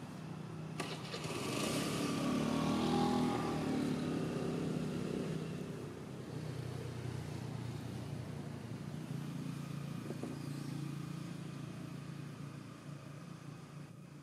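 A motor vehicle's engine, louder from about one to five seconds in as it passes, then a steady low engine hum continuing.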